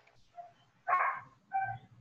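A dog barking faintly twice in the background, once about a second in and again about half a second later.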